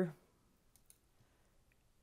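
A few faint computer mouse clicks about a second in.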